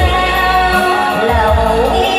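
A woman singing a sustained, wavering melody into a microphone over amplified backing music with a pulsing bass beat.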